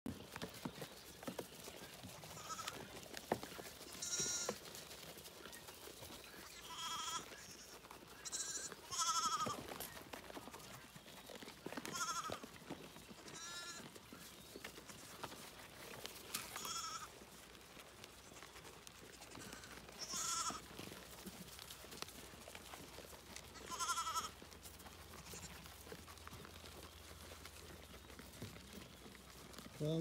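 Newborn lambs bleating: high, wavering calls every few seconds, about ten in all.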